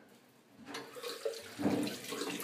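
Water from a bathroom tap splashing in the sink as someone washes her face, in irregular splashes that grow loudest near the end.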